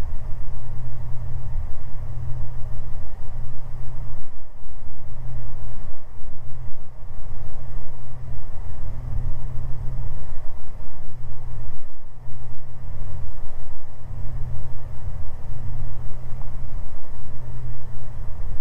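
Twin engines and propellers of a Beechcraft G58 Baron running, heard inside the cabin as a loud low drone that swells and fades about once a second. The pulsing is the two propellers beating against each other with prop sync switched off.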